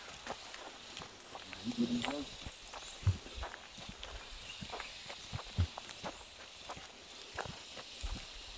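Footsteps on a forest trail: irregular soft crunches and thumps, two of them heavier, a little after three and five seconds in.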